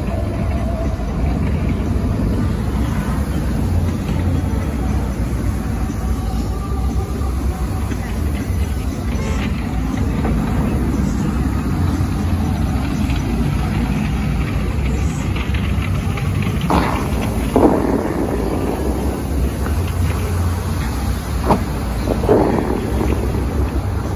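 Bellagio fountain water jets spraying, a steady low rumble and hiss, with a few brief louder bursts in the second half as the jets fire.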